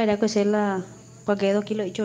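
A voice repeating a short sung phrase over and over in held notes, with a brief pause near the middle, played from a WhatsApp voice message.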